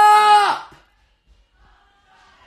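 A young man's long, loud shout of 'Stop!', held on one high pitch and cutting off about half a second in.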